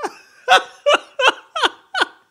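A person laughing hard in a string of short bursts, about three a second, each falling in pitch.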